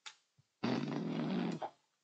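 A man's low, drawn-out groan at one steady pitch, about a second long: a wordless sound of disgust at a badly built seat.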